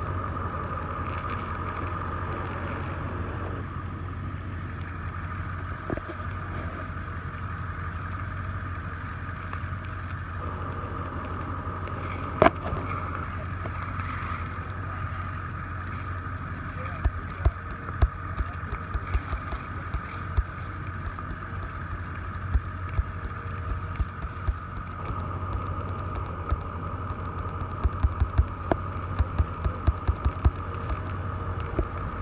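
Prescribed fire burning through pine-flatwoods undergrowth: sharp pops and cracks over a steady drone, with one loud crack about twelve seconds in and frequent pops from about seventeen seconds on.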